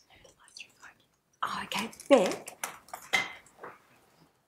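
Indistinct murmured speech picked up by a courtroom microphone, starting about a second and a half in, after a few faint clicks and rustles.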